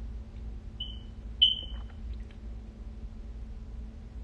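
Two short high-pitched electronic beeps about half a second apart, the second louder and trailing off, over a steady low hum.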